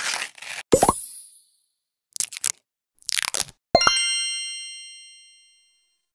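A skincare sachet being torn open with a crinkle, followed about a second in by a popping sound effect. Short crinkling bursts come around two and three seconds in as the eye patches are taken out. Near four seconds there is another pop, then a bright chime ding that rings and fades away.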